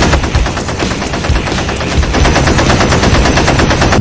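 Automatic rifle fire as a sound effect: one continuous rapid burst, shot after shot without a pause.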